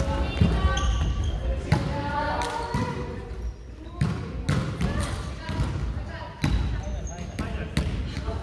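Badminton doubles play on a wooden gym floor: sharp hits on the shuttlecock, shoes squeaking and feet thudding on the floorboards, with voices in the hall.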